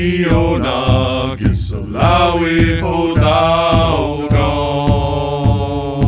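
A chanted song: a voice singing long held notes over a steady drum beat of about two strokes a second.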